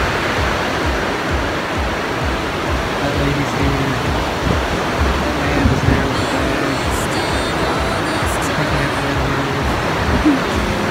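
Ocean surf washing up the beach, a constant rush of noise, with background music of held notes coming in about three seconds in.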